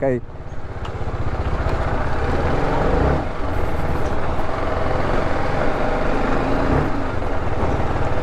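Motorcycle engine running at low road speed in a low gear, with a fast, steady firing pulse; the revs swell briefly about three seconds in.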